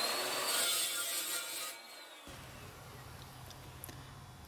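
Evolution 14-inch metal-cutting chop saw spinning up with a rising whine and cutting through steel bar stock with a harsh rasp, then winding down with a falling whine after about two seconds.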